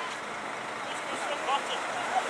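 A road vehicle's engine running steadily, with faint voices behind it.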